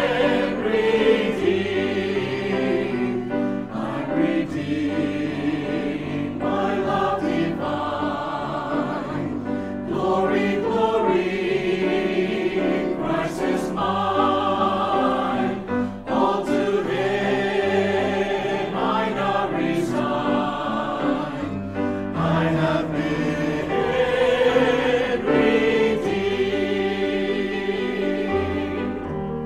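Mixed choir of men and women singing a hymn in parts, sustained and continuous.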